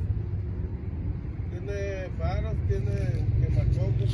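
A faint, distant man's voice answering briefly in the middle, over a steady low rumble that grows somewhat louder toward the end.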